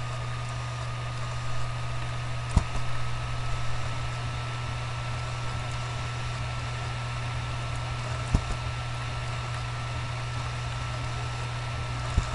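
Steady low electrical hum with a thin high whine and hiss in the recording, broken by two sharp computer mouse clicks, one early and one about six seconds later.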